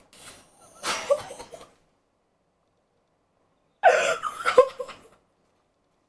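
A woman's excited gasps and breathy laughter, muffled behind her hand, in three short bursts with the loudest near the end.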